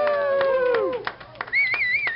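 A few men cheering with one long, held 'woo' in the first second, then a couple of hand claps and a warbling whistle near the end.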